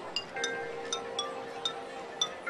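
Marching band front ensemble in a soft passage: bell-like struck notes from metal mallet percussion, about two a second, ringing over a held chord.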